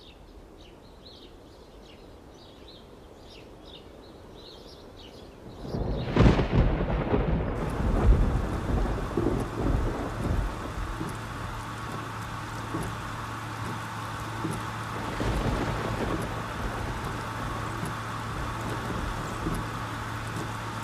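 Faint high chirps over quiet, then about six seconds in a sudden loud rumble that rolls on for several seconds and settles into a steady hiss with a low hum underneath.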